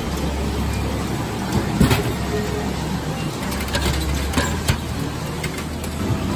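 A drink vending machine dispensing a can: a single loud knock about two seconds in as the can drops into the tray, then a few lighter clicks and knocks as it is taken out, over a steady low hum.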